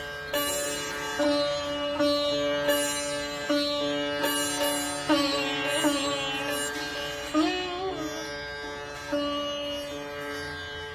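Solo sitar playing a slow melody: single plucked notes roughly one a second over steady ringing strings, with a few notes bent in pitch by pulling the string around the middle.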